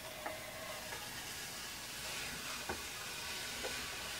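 Printer paper being slowly peeled off a gel printing plate coated with tacky acrylic paint: a faint crackle of paper lifting from the wet paint, with a few small ticks.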